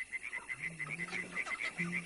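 Animal calls: a steady run of short high chirps about seven a second, with two lower drawn-out calls, one about half a second in and one near the end.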